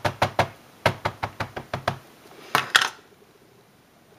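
Rapid light tapping of an ink pad against a clear stamp on an acrylic block, about six taps a second, inking the stamp up. About two and a half seconds in comes a short scuff, then the tapping stops.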